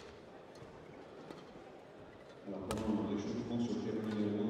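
Badminton rackets striking a shuttlecock, a few sharp clicks in a large reverberant hall, the loudest about two and a half seconds in. From about two and a half seconds in, a louder voice echoes through the hall over them.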